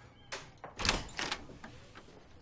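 An interior door being opened: a few short clicks and knocks from the handle and door, the loudest about a second in.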